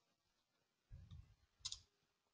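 Near silence: room tone, with a faint low thud about halfway through and a quick double click near the end.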